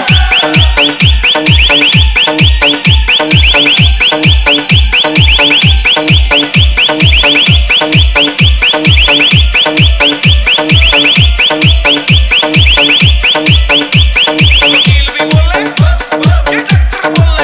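DJ hard-bass EDM remix: a steady kick-drum beat of a little over two hits a second, each with a deep falling bass, under a fast, repeating high-pitched, alarm-like synth line that drops out near the end.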